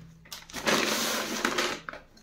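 Kraft-paper courier wrapping being torn open and crinkled by gloved hands: one crackling stretch of about a second in the middle.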